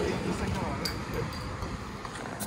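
Crown cap being pried off a glass beer bottle without an opener, a single light metallic click about a second in, over faint background voices.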